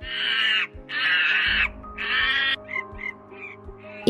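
Sound effect of monkeys screeching: three harsh calls of under a second each, then a few short, quieter chirps, over soft background music.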